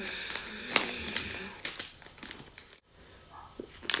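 Plastic packet of leather-cleaning wipes crinkling and rustling as a wipe is pulled out, with a few sharp clicks and taps in the first two seconds and another click near the end.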